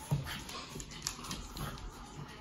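Dogs' claws clicking on a wooden floor as they walk around, with one sharper knock near the start.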